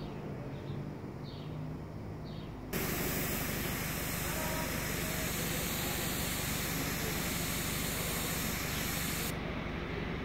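Compressed-air gravity-feed spray gun spraying paint: a steady hiss starts suddenly about a quarter of the way in and cuts off sharply about six and a half seconds later. A low steady hum can be heard underneath before the spraying starts.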